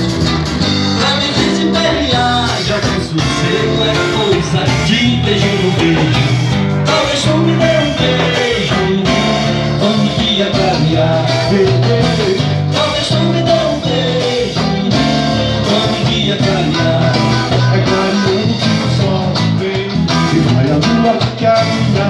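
Live band music: electric guitars, bass guitar and drum kit playing a steady, upbeat dance rhythm.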